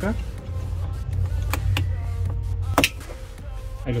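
A few sharp plastic clicks as a car's rear interior light is unplugged from its wiring connector, the loudest near three seconds in, over steady background music.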